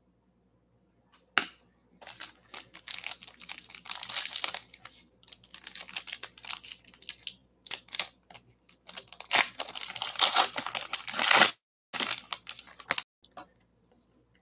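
A trading-card pack wrapper being torn open and crinkled by hand, in irregular crackling bursts that start about two seconds in and stop short near the end, followed by a few light clicks.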